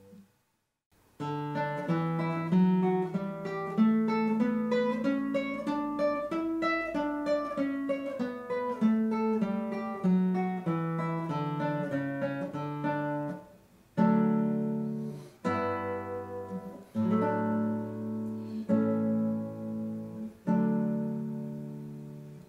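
Classical guitar played fingerstyle. After a moment's pause it plays a quick stream of single plucked notes whose melody rises and then falls. About two-thirds of the way through it changes to a slower series of plucked chords, one about every second and a half, each left to ring.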